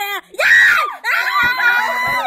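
Excited high-pitched shrieking and shouting voices, with the loudest squeal about half a second in, a reaction to a dice roll in a game.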